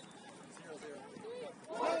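Voices calling out across an open field, faint at first; a louder, closer voice starts shouting near the end.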